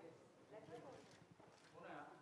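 Near silence, with faint background voices murmuring.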